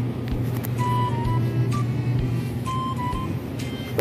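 A metal shopping cart rolling and rattling over a store floor, with short clicks over a steady low hum. A short high three-note phrase from background music is heard twice.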